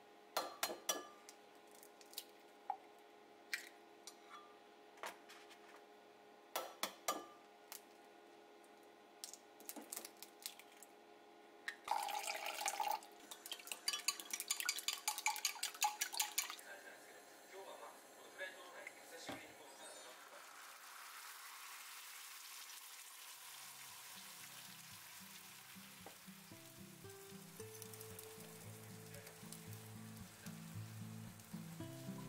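Eggs cracked and knocked against a glass jug, then beaten briskly with chopsticks in a glass measuring jug, a fast run of clinks lasting a few seconds. The beaten eggs then sizzle steadily in a hot stainless steel frying pan, getting louder, while background music starts in the second half.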